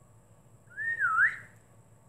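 A woman whistling one short note, well under a second long, about a second in. The pitch rises, dips and climbs again.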